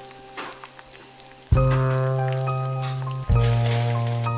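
Eggs sizzling as they fry in a pan, under background music. The music swells to loud bass chords about one and a half seconds in and again near the end.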